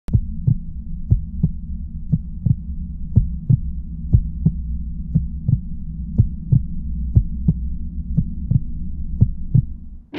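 Heartbeat sound effect: paired low thumps in a lub-dub rhythm, about one beat a second, over a steady low hum. It stops just before the end.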